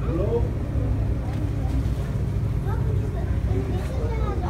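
Shop ambience: a steady low rumble with faint, indistinct voices in the background.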